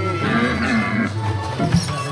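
Background music with an animal vocal sound effect from the cartoon reindeer, wavering in pitch during the first second, and a short thump about three quarters of the way in.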